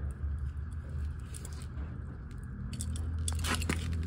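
Soft handling sounds from nitrile-gloved fingers working oil around the rubber gasket of a new spin-on oil filter, with a few sharper clicks near the end, over a steady low hum.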